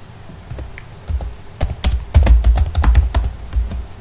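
Computer keyboard being typed on: a few scattered keystrokes, then a fast run of key clicks from about a second and a half in that eases off near the end.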